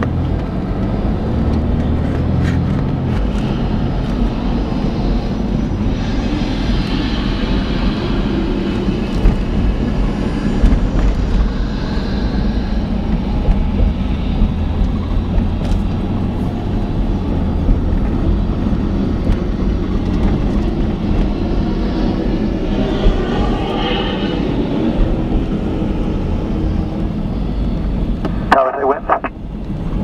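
Vehicle engine and road noise heard from inside the cab while driving slowly, a steady low rumble, with faint, unclear voices of air traffic control radio at times and a short pitched burst near the end.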